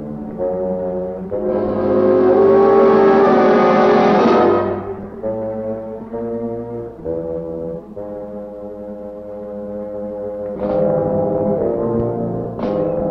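Dramatic horror-film score of low brass chords, swelling to a loud climax about two seconds in, then falling back to held low chords, with a sharp struck accent near the end.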